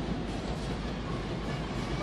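Steady crowd noise from spectators filling an indoor volleyball arena, an even wash of sound with no distinct events.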